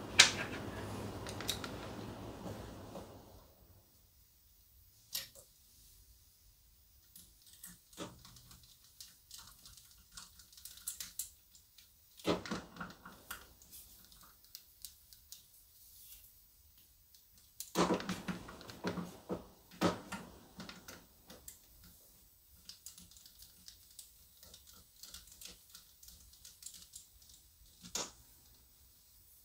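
Screwdriver work and handling of small parts inside an open Gaggia espresso machine: scattered light clicks and clatters, with two busier spells of clattering, about halfway through and about two-thirds through.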